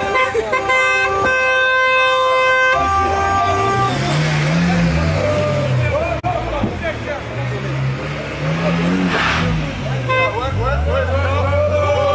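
A car horn sounds for about the first three seconds, then a small car's engine is revved up and down several times, over shouting voices.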